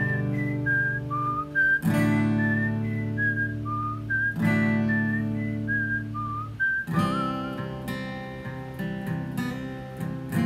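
A whistled melody over strummed acoustic guitar chords, the chords struck about every two and a half seconds. The whistling stops about three-quarters of the way through and the guitar plays on alone.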